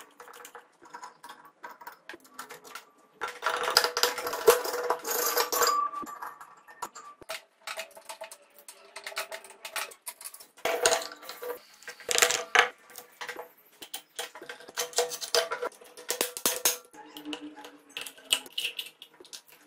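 Hand tools working on bare metal engine parts of a stripped Suzuki Bandit 250 engine: a scraper scraping carbon off a piston crown, then bolts being undone on the aluminium side cover. There is a dense stretch of scraping and clatter from about three to six seconds in, and sharp metal clinks scattered through the rest.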